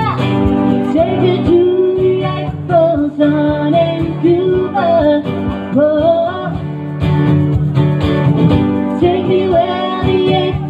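Live acoustic music: an acoustic guitar accompanies a melody that slides and bends, most likely sung by a voice.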